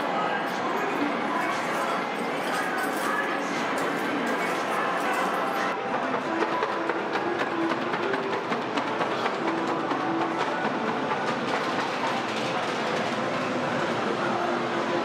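Video arcade ambience: overlapping game-machine music and jingles, electronic beeps and a hubbub of voices, with short held tones now and then.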